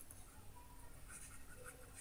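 Faint scratching of a stylus writing a word on a pen tablet.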